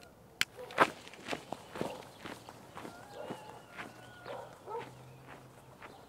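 Footsteps on a dry dirt trail, irregular steps about twice a second, the loudest near the start, after a single sharp click.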